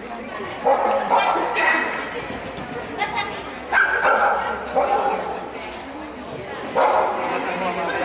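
Miniature schnauzer barking while running an agility course: a series of short, sharp barks, about seven over several seconds, irregularly spaced, with the handler's called commands among them.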